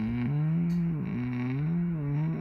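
A man humming with closed lips in a long, wavering tone, the pitch sliding slowly up and down.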